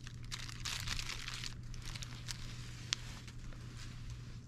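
Faint crinkling of a thin plastic sleeve as a Foley catheter is drawn out of it by gloved hands, over a steady low hum, with a single sharp click about three seconds in.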